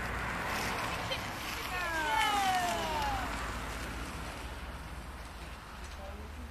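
A person's voice calling out in one long cry that falls in pitch, over a steady low rumble of wind noise.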